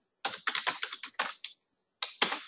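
Typing on a computer keyboard: a quick run of about ten keystrokes, a short word being typed, stopping about a second and a half in.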